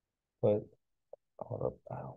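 A man's voice says 'but', then a pause and a few short, low, murmured hesitation sounds.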